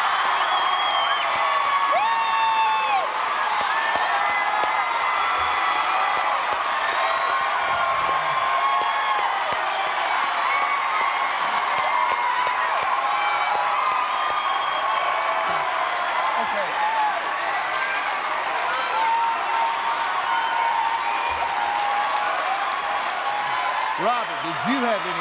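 Studio audience applauding and cheering steadily, with many shouts and whoops over the clapping, in celebration of a correct answer.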